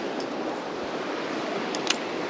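Steady rush of flowing creek water, with two small clicks near the end.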